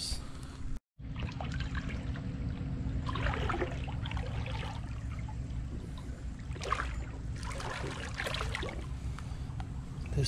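Shallow water trickling over gravel and stones in a concrete channel, with a steady low rumble beneath and a few louder stretches of rushing water. The sound cuts out for a split second about a second in.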